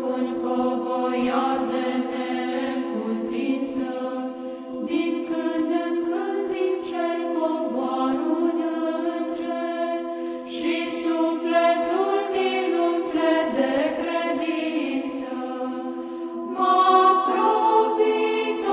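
Orthodox church chant: voices sing a slow melody over a steadily held drone note, and the singing swells louder near the end.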